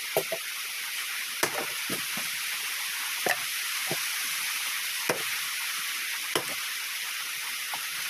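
An axe chopping into a log of firewood: sharp blows about every second or so, some in quick pairs, over a steady background hiss.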